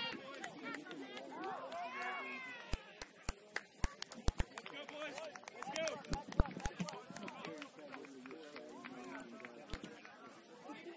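Indistinct shouts and calls from rugby players and sideline onlookers across an open field, several voices overlapping without clear words. A run of sharp knocks comes through in the middle, with one more near the end.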